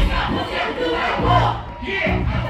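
Live hip hop played loud through a festival PA, with deep bass notes and shouted voices over the beat.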